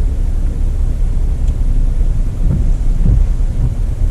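Steady low rumble inside a Jeep's cabin, its engine idling while stopped, with a few faint soft taps.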